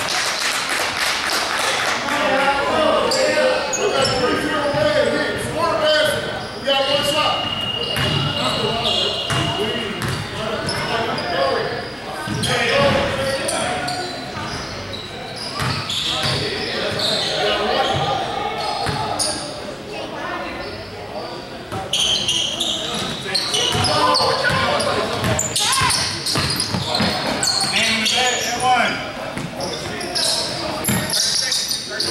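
Basketball bouncing on a hardwood gym floor during play, with players' voices echoing in a large hall.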